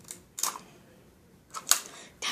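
Two short clicks about a second apart from a small handheld tape dispenser as a strip of clear tape is pulled out and torn off on its cutter.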